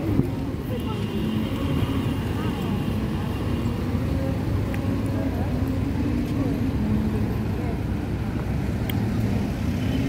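City street ambience: a steady low traffic hum mixed with the chatter of passers-by.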